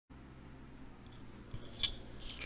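Low steady hum and faint room hiss, with a few small clicks and rustles about one and a half seconds in.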